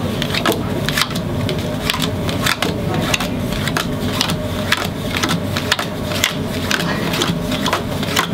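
Playing cards dealt one by one face down onto a wooden table, a run of quick card slaps about two to three a second, kept up in a steady rhythm.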